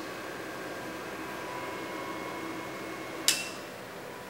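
Quiet room noise with a few faint, steady high-pitched tones, broken by one short sharp click a little after three seconds in.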